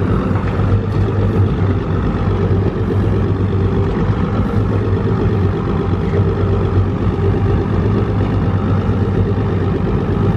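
Boat outboard motor idling steadily, a constant low hum that does not change.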